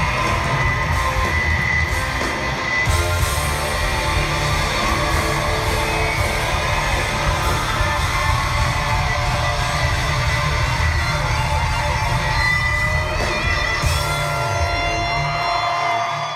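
Live band playing amplified music: electric guitars over a heavy, pulsing bass beat, heard from within the audience.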